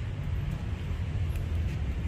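A steady low rumble of outdoor background noise, even and unbroken.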